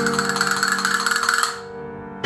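Castanets played in a rapid roll over a held accompanying chord. The roll stops about one and a half seconds in, leaving the chord fading.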